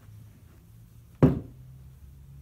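A single sharp knock about a second in, over a faint low steady hum.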